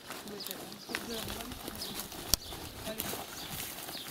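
Dry strips of tree bark rustling and crackling as they are handled on a heaped cart, with scattered clicks and one sharp click about two seconds in.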